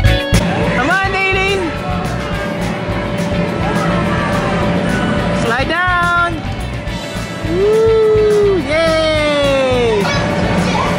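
Background music with children's high-pitched shouts over it: one about a second in, another near six seconds, and two longer calls near the end, the last one falling in pitch.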